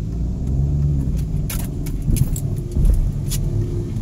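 Car interior while driving slowly: steady engine and road rumble, with a few sharp light rattles from inside the cabin about halfway through.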